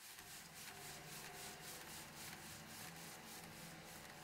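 Grand piano strings rubbed from inside the instrument: a faint, rhythmic scraping, about four strokes a second, with low sustained string tones ringing underneath.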